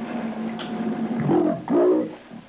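A man's voice on tape played back at slow speed: a steady hum, then from about a second in a loud, drawn-out, distorted voice that is only a rumble.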